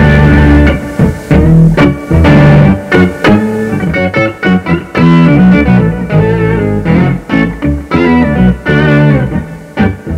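Electric guitar chords played through an Electro-Harmonix POG2 polyphonic octave generator pedal, the pedal adding octave voices to each chord. The chords come in a series of strokes with short breaks between them.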